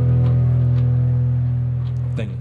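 Guitar music: a chord held at a steady level, with a few light strums over it.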